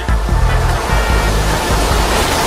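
Music with a loud, steady rushing noise over it, like strong wind buffeting a camera microphone, from a played video of wind gusting around an inflatable bouncy slide.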